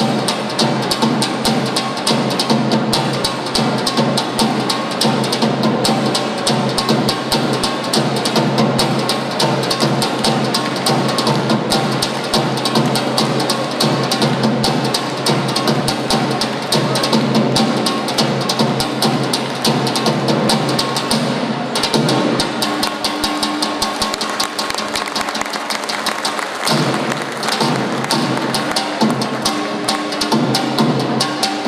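Albanian folk dance music driven by a tupan, the large double-headed bass drum, beaten in a fast steady rhythm. About two-thirds of the way through, the deep booming part drops back and a held tone comes through over the drumming.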